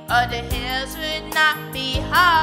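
A boy singing a slow gospel ballad solo over instrumental backing, drawing out long notes that rise and fall in pitch.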